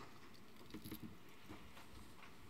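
Quiet room tone with a few faint, soft clicks and taps.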